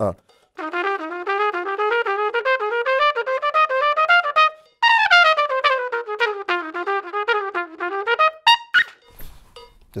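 Trumpet playing a quick scale exercise. A run of short notes climbs step by step for about four seconds, breaks off briefly, then starts higher and steps back down.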